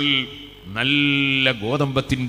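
A man chanting in a melodic sermon style, holding one long steady note in the middle between shorter syllables.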